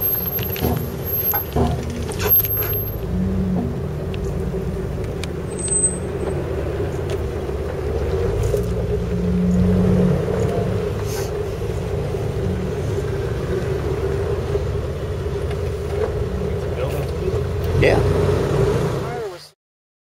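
Jeep engine and drivetrain running steadily at low speed, heard from inside the cab while crawling along a dirt trail, with a few sharp knocks and rattles in the first few seconds. The sound cuts off abruptly just before the end.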